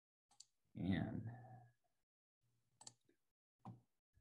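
Faint computer mouse clicks, three of them spread across a few seconds, as a screen share is set up. About a second in, a man briefly murmurs a short word or hum.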